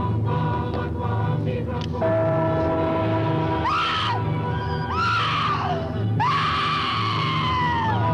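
Dark orchestral film score with held tones and a low, pulsing beat. Over it, from about halfway through, come three high shrieks, each rising then falling in pitch; the third is the longest, close to two seconds.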